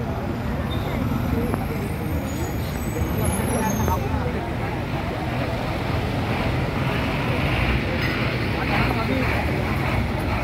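Steady roadside traffic noise from vehicles passing close by: the engines and tyres of a bus, a lorry, three-wheelers and scooters.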